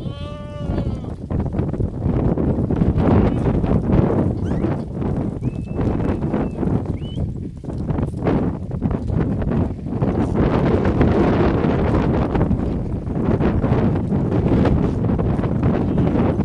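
A goat in a browsing herd bleats once right at the start, a wavering call, with a faint short higher call a few seconds later. Behind it runs a steady low rushing noise, like wind on the microphone, mixed with rustling.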